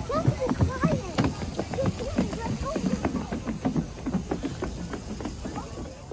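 Several children running across wooden boardwalk planks: a quick, uneven patter of footfalls, with short vocal sounds from the children in the first second or so.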